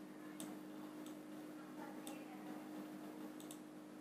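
A few faint computer mouse clicks, two of them in quick succession near the end, over a steady low electrical hum.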